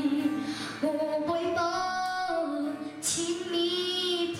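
A young girl singing a slow song in long held notes, with a short breath about three seconds in, to acoustic guitar accompaniment.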